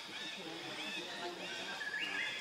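Forest background with low, irregular chatter and several high whistled calls that glide up and down and overlap, one held steady near the end before rising.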